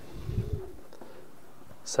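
Soft low thumps of a hand moving on paper and the desk under the document camera in the first second, with a faint steady low tone behind them.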